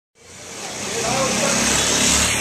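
Busy street noise fading in over about a second: steady traffic with a low engine rumble and faint voices mixed in.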